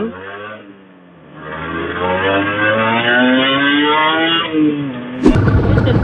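Honda NSR150RR two-stroke single-cylinder engine pulling under throttle, its pitch climbing steadily for about three seconds and then dropping as the throttle eases. About five seconds in, the sound cuts abruptly to a louder engine rumble.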